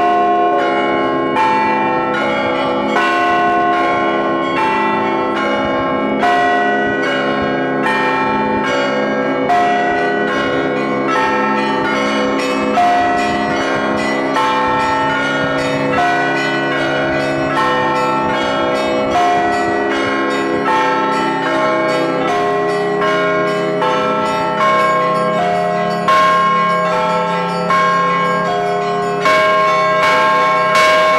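Orthodox church bells ringing continuously: a quick, steady run of strikes on the smaller bells, with a heavier stroke every few seconds, over the long hum of the larger bells.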